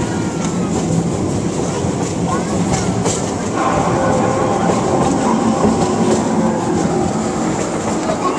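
Small ride-on train rolling along its narrow-gauge track, heard from aboard an open passenger coach: a steady rumble with repeated clicks from the wheels over the rails.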